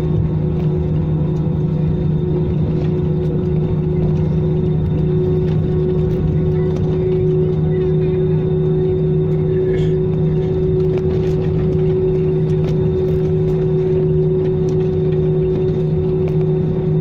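Cabin noise of an Airbus A320 jet airliner on the ground after landing: a steady engine rumble with a low hum and a higher constant tone above it.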